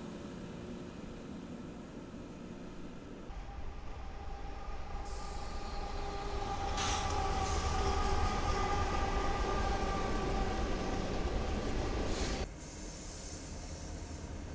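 Freight train with diesel locomotives passing close at speed: a low rumble of engines and wheels, louder from about three seconds in, with a steady high tone over it. It cuts abruptly to a quieter passing train near the end.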